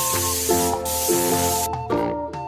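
Aerosol spray-can hiss sound effect that cuts off suddenly shortly before the end, over bouncy children's music.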